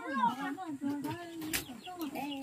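A high-pitched voice talking without pause, its pitch bending up and down and holding steady for about a second in the middle. There is one sharp knock about three-quarters of the way through.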